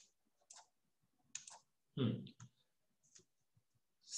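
A few faint, sharp clicks scattered irregularly, with one brief louder, fuller sound about two seconds in.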